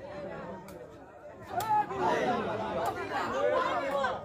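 Crowd of spectators chattering, many voices overlapping and growing louder about a second and a half in, with a few faint sharp knocks.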